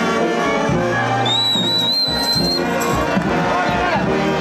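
New Orleans-style brass band playing, with a sousaphone carrying the bass line. A shrill whistle cuts over the band about a second in and holds for about a second and a half.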